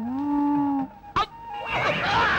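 One drawn-out, moo-like vocal call, held steady for just under a second. A sharp knock follows a little after one second, then a noisy clatter builds toward the end as a scuffle starts.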